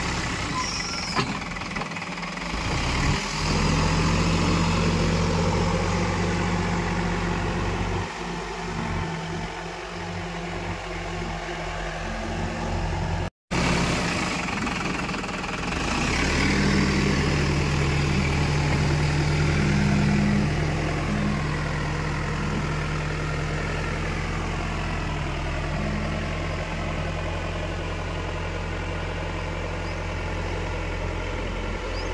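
Escorts Digmax backhoe loader's diesel engine running as the machine works its front loader bucket through loose soil. The engine note is unsteady for a few seconds before the sound drops out briefly about halfway through, then runs steadier and louder.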